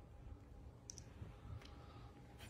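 Quiet room tone with a few faint, sharp clicks: a quick pair about a second in and a softer one shortly after.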